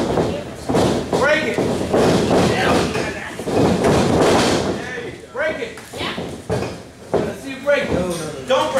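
Wrestlers landing on a wrestling ring's mat with several heavy slams and thuds, among shouting voices.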